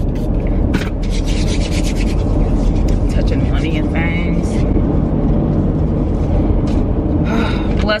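Close rubbing and rustling sounds over the steady low rumble inside a car.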